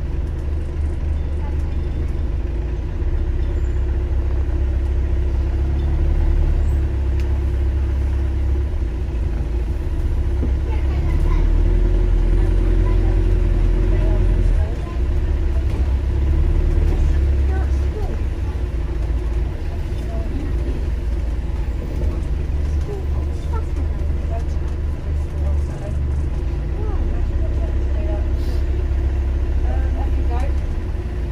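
Bus engine and running gear heard from inside the passenger saloon: a continuous low drone and road rumble that shifts in level about 15 and 18 seconds in, with faint passenger voices.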